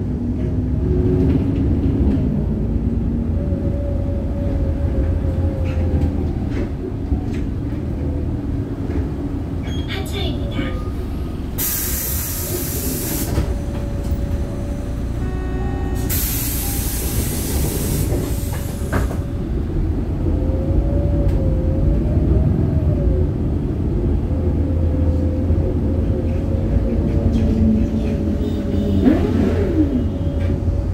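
City bus cabin noise: a steady low engine and road rumble with a faint wavering whine from the drivetrain. Two loud bursts of compressed-air hiss come about 12 and 16 seconds in, lasting a second or two each, from the bus's air system.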